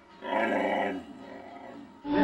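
A pet dog answering its owner's question with a rough, drawn-out vocal sound, as if trying to talk. It lasts under a second and then fades to quiet.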